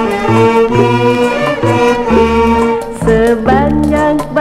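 Gambus orchestra music from a vinyl LP: an instrumental passage of sustained melody notes over a moving bass line, with a wavering, vibrato-like line coming in near the end.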